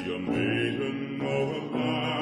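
Instrumental interlude between verses of a ballad: English lute playing plucked notes and chords.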